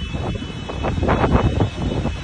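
Wind buffeting the microphone in gusts, swelling loudest about a second in.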